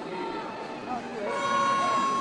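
A man's voice over arena crowd noise. About a second and a half in, a steady, loud horn tone starts and holds.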